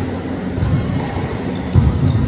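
Echoing sports-hall din with a steady low rumble, and a volleyball being hit, the loudest hit coming as one sharp thud near the end.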